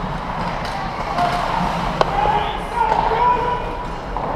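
Ice hockey rink sound: players' and spectators' voices calling out, with one sharp crack of a puck impact about halfway through.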